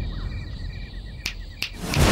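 Crickets chirping in a rapid pulsing trill, with two sharp clicks a little over a second in.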